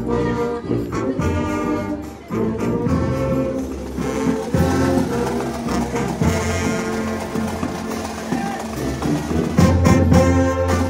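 A brass band dominated by tubas and euphoniums, playing held chords in a deep, full low-brass sound. The band breaks off briefly about two seconds in, then comes back in.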